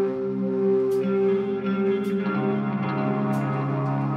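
Live rock band music: electric guitar holding slow, ringing chords through effects pedals, with echo. The chord changes about halfway through, and a faint high tick comes about once a second.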